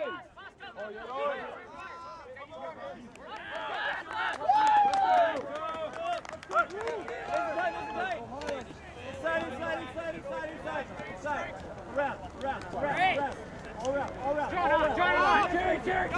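Several voices of players and sideline teammates shouting and calling out over one another during play, with no single clear speaker.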